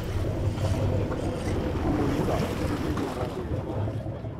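Wind buffeting the microphone over the wash of open-sea waves against a boat's hull, a steady noisy rush.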